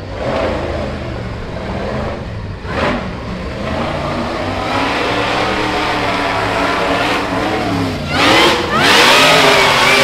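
Rock bouncer buggy's engine working hard as it climbs a steep dirt hill, growing louder, then revving hard in rising surges about eight seconds in.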